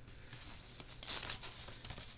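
Cardboard DVD packaging being handled, rustling and crinkling with small clicks, loudest about a second in.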